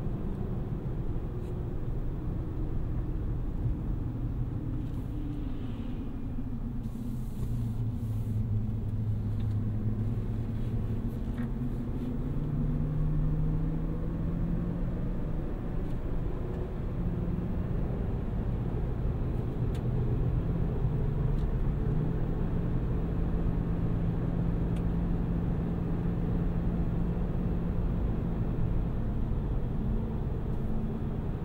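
Cabin sound of a 2023 Chevrolet Silverado ZR2 Bison driving on a country road: the 6.2-litre V8's low drone under steady tyre and road noise. The engine note shifts in pitch a few times as the truck slows and picks up speed, then holds steady through the second half.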